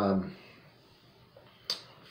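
A man's drawn-out "uh" trails off, then a quiet pause broken by a single sharp click near the end.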